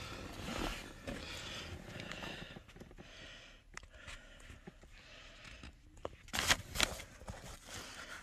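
Quiet rustling and shuffling of things being moved about on a truck's cab floor, with a few sharp clicks and knocks about six and a half seconds in.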